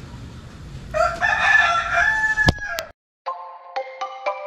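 A rooster crowing once, a single call of about two seconds starting about a second in and cut off abruptly. After a short silence, music begins near the end.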